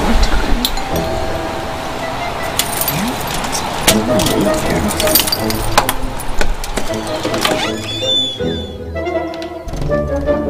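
Knuckles knocking on a wooden front door and a bunch of keys jingling, a few sharp knocks in the middle, over background music.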